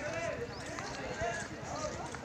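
Voices of people talking at a distance, with irregular footsteps on stone paving close to the microphone.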